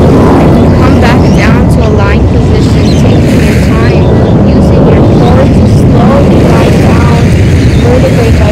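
Wind buffeting the microphone outdoors, a loud steady rumble, with fainter high-pitched calls rising and falling over it.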